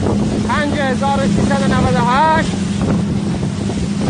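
Speedboat engine running at speed with a steady low hum, under heavy wind buffeting on the microphone and rushing water. A voice shouts over it in the first half.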